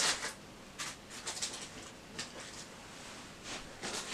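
Faint handling noise: a scatter of light rustles and small clicks, about six or seven spread across the few seconds.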